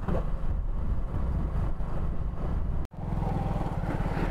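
Engine of a moving road vehicle running steadily, with road noise. The sound drops out for an instant near three seconds in, then the hum resumes a little louder.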